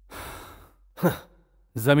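A person sighs: a breathy exhale lasting under a second, followed by a brief voiced sound, with speech starting near the end.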